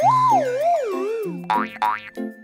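Cartoon sound effect: a wobbling, sliding whistle-like tone that bends up and down as it falls in pitch for just over a second, then two quick rising zips, over a bouncy children's music backing with bass notes.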